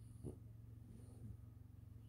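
Faint breathing of a resting French bulldog, with one brief, louder breath about a quarter of a second in.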